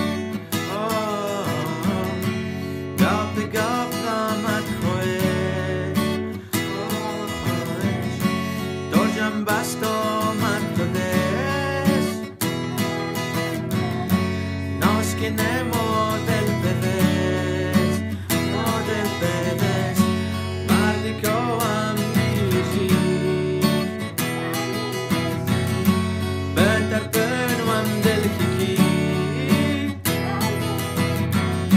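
A song: a man singing in Shughni over instrumental accompaniment.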